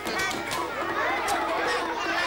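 A classroom of young children all shouting and chattering at once: a steady din of many overlapping voices.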